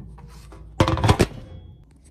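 A short clatter of white ceramic bowls knocking together about a second in, with a brief ring after it.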